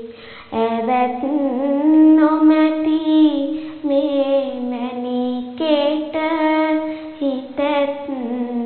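A girl's voice singing Sinhala kavi verse in the traditional chanted style, solo, holding long gliding notes. A new phrase begins about half a second in, after a short breath.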